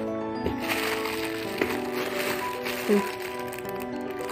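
Background music with long held notes, over the crinkling and rustling of plastic packaging as wrapped party items are handled in a cardboard box. The crinkling comes in about a second in and lasts roughly two seconds.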